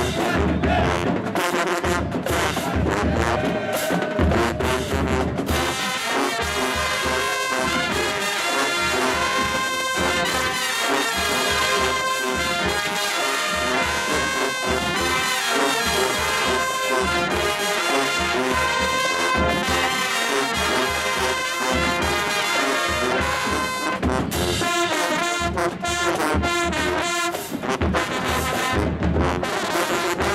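College marching band playing a brass-and-percussion stand tune: sousaphones, trombones and trumpets over drums. The first few seconds are drum-heavy, then the horns carry long held chords, and the drums come back hard near the end.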